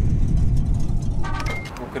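Channel logo sting: a bass-heavy car-engine sound effect fills the first second, then gives way to a short, bright, multi-note chime about a second and a half in.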